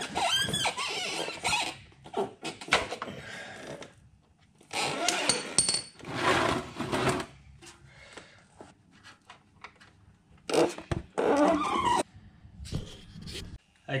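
Ratchet and hand work undoing an engine's sump plug: irregular clicks and knocks with short noisy bursts, most of them in the first couple of seconds.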